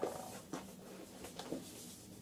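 Soft pen writing on paper held in a hardcover folder, with a few light taps.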